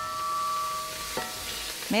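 Hot cooking oil sizzling on the stovetop in a steady hiss. A few steady high tones run underneath and fade out past the middle, and there is a light click about a second in.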